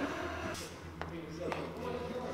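Faint voices over a low steady hum, with two sharp clicks, one about a second in and one half a second later.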